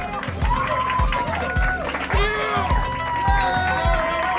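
Music with a steady kick-drum beat, about two beats a second, under a sung vocal line.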